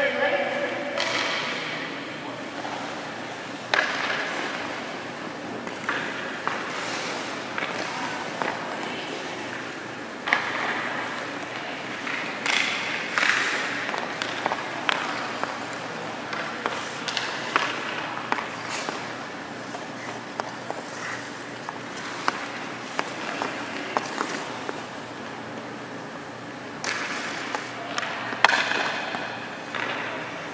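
Ice hockey practice sounds: sharp cracks of a stick striking pucks and pucks hitting the goalie's pads, with skate blades scraping the ice in between, and indistinct voices.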